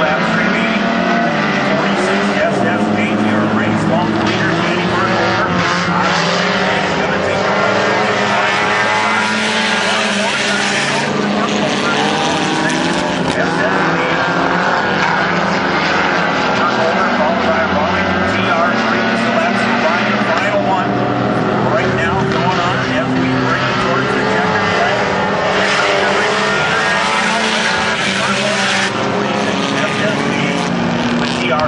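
Several four-cylinder Hornet-class compact race cars running laps on a dirt oval. Many engine notes overlap, each rising and falling as the cars rev through the turns and pass by.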